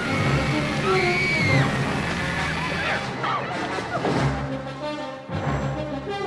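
Dramatic film-trailer music mixed with crash and impact sound effects. There are gliding high sounds early on, and sharp hits about three seconds in and again near the end.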